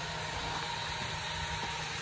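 Steady background noise: a low hum with an even hiss over it and no distinct knocks.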